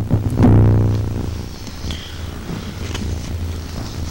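A low buzzing hum that swells about half a second in and fades over the next second or so, then settles to a steady low hum.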